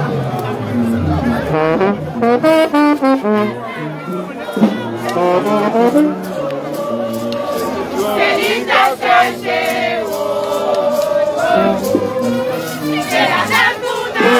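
Haitian rara band playing in the street: brass horns carry a melody over a low sousaphone bass line that steps from note to note. From about eight seconds in, crowd voices sing and shout over the band.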